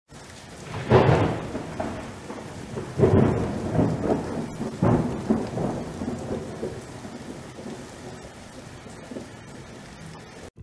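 Thunder rumbling over steady rain: three loud peals about a second in, at three seconds and near five seconds, each rolling away and fading out towards the end.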